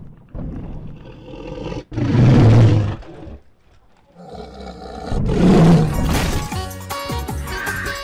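Dinosaur roar sound effect, twice: a loud, rough roar about two seconds in and a second one around five seconds in, each with a deep low end. Music comes back in near the end.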